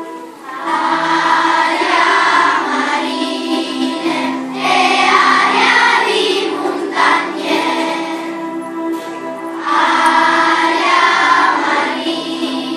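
Children's choir singing over a steady instrumental accompaniment, coming in about half a second in and singing in phrases with short pauses between them.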